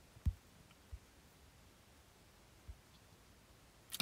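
Fingertip taps on a phone touchscreen picked up by its microphone: three soft, low taps, just after the start, about a second in and near three seconds, with faint room hiss between.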